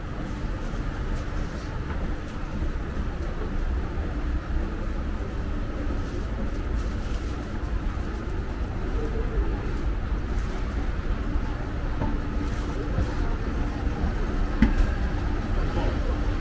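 Busy city street ambience: a steady low rumble of traffic with voices in the background, and a short sharp click near the end.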